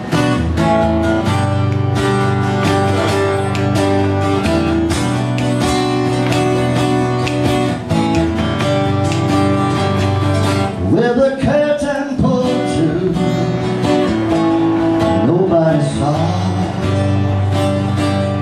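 Acoustic guitars playing the intro of a slow country song, strummed and picked. A voice briefly sings a little past the middle.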